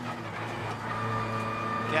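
Onboard sound of an Audi RS 3 LMS TCR race car's turbocharged four-cylinder engine running at steady revs, heard from inside the cockpit.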